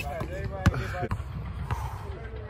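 A basketball striking hard once, about two thirds of a second in, with a lighter knock a little later, over distant players' voices.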